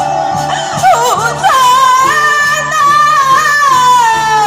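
Taiwanese opera (gezaixi) singing amplified through a handheld microphone: one voice holds a long note, breaks into a wavering, ornamented run about a second in, then settles on another long held note, over instrumental accompaniment.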